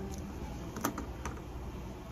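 A few sharp clicks and taps of a ballpoint pen and paper sheets being handled on a desk, the loudest a little under a second in, over a low steady hum.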